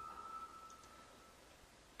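A lingering high chime note dies away over the first second or so, then near silence.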